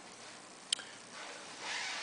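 Quiet room with a single sharp click about a third of the way in, then a soft breathy hiss near the end.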